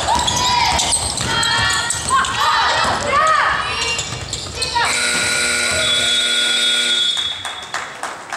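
Basketball dribbling and sneaker squeaks on a hardwood gym floor, with players' voices. About five seconds in, a steady electronic horn sounds for about two seconds and cuts off, and play stops: typical of a scoreboard buzzer ending a period.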